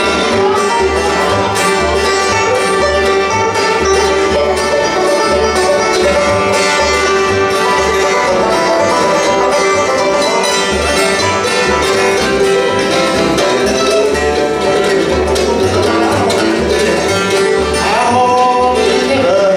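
Acoustic bluegrass band playing an instrumental passage: banjo, fiddle, mandolin, acoustic guitar and upright bass, the bass plucking a steady beat underneath.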